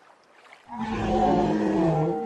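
Tyrannosaurus rex roar sound effect for an animated dinosaur: one loud, drawn-out roar that starts under a second in, its pitch sagging slightly as it goes.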